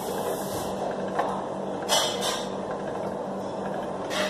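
Hand-cranked pasta machine turning as a sheet of fresh pasta dough passes through its cutter into noodles, a mechanical whirring with short louder knocks about one and two seconds in, over a steady background hum.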